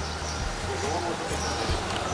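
Indistinct background voices of people talking, over a haze of outdoor street noise with a low steady hum underneath.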